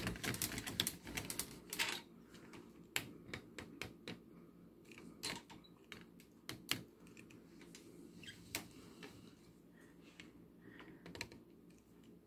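Faint handling noise: a quick run of light clicks and taps in the first two seconds, then scattered single clicks.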